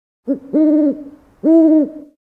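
Owl-like hooting played as a sound effect: a short note, then two longer, even hoots about a second apart.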